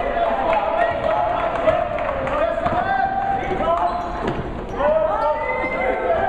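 Live basketball game in a gym: a basketball bouncing on the hardwood floor among overlapping voices of players and spectators, echoing in the hall.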